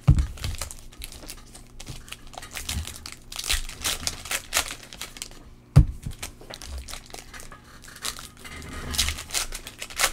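Trading-card pack wrappers crinkling and tearing as packs are opened and the cards inside are handled, in irregular crackles. A heavier thump comes just after the start and another about six seconds in.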